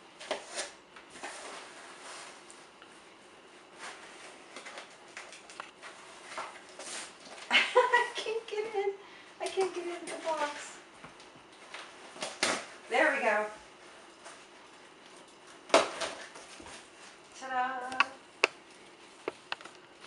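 Packing tape being pulled off a cardboard box and the box flaps opened: a run of short scrapes, rips and rustles of cardboard. A woman's voice murmurs briefly a few times in between.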